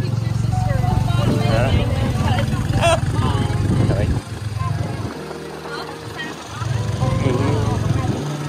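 Motorcycle engine of a tuk-tuk running as it carries its passengers along. The engine eases off for about two seconds midway, then pulls again.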